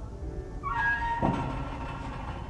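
A cat meows once, a call of about half a second whose pitch drops sharply at the end.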